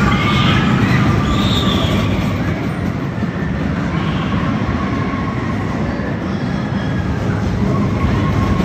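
Small tiger-themed family roller coaster train rolling along its steel track: a steady, loud rumble of the wheels, with some higher-pitched sounds over it in the first two seconds.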